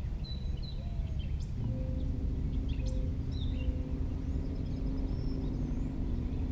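Small birds chirping in short calls and a brief trill over a steady low outdoor rumble. From about two seconds in, a distant motor's steady hum joins.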